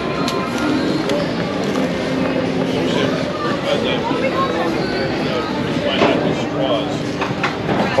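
Outdoor café ambience: scattered chatter of other diners over a steady background noise from the street.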